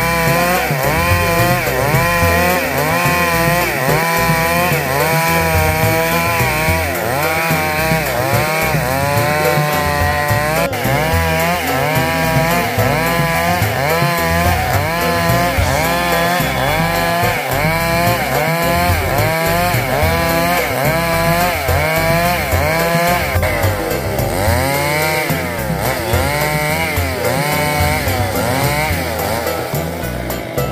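Two-stroke chainsaw ripping a log lengthwise. The engine runs loud and continuously, its pitch rising and falling over and over, about once a second, as the chain is worked along the cut.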